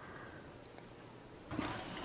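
Quiet room tone, then a soft rustle about a second and a half in as a baked sourdough loaf is moved by hand and set down on a wire cooling rack.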